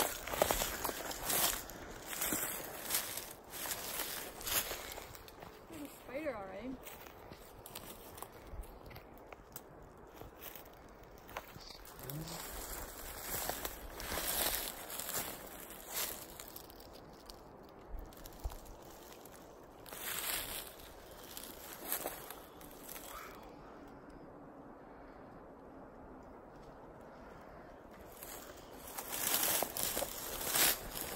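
Footsteps crunching through dry leaf litter and dead pine branches, with brush rustling against the walker, in an uneven rhythm; the steps thin out and go quieter for a few seconds near the end, then pick up again.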